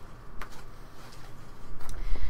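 Quiet room hum with light handling noise: a sharp click about half a second in and a couple of fainter ticks near the end, as yarn is put down and a canvas bag is handled.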